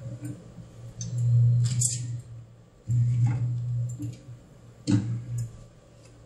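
A 999SN bubble tea cup sealer runs its sealing cycle on a paper cup with PP sealer film. Its motor hums in two runs of about a second each. There is a sharp click near the end of the first run and another about five seconds in.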